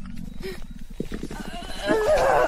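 Voice-acted growling and grunting of a woman turning into a werewolf: a low, rasping growl for about the first second, then short strained grunts, and a louder strained groan starting near the end.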